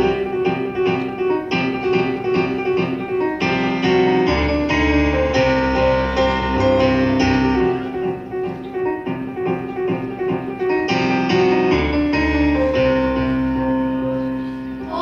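Electric keyboard playing an instrumental introduction: a quick repeated figure of short chords over held lower notes, with a deep bass line joining a few seconds in.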